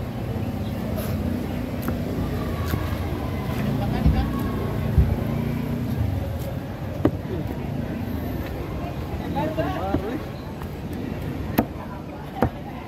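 A heavy knife knocking on a wooden log chopping block about five times at irregular intervals as fresh tuna is cut into pieces. Under it runs a steady low engine and traffic rumble with faint voices.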